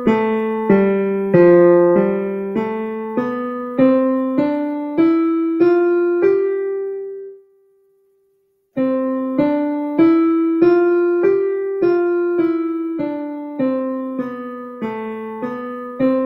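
Digital piano playing a simple single-note melody around middle C at a slow, even beat. The first line ends on a long held note (a whole note) about six seconds in. A second of silence follows, then the tune carries on.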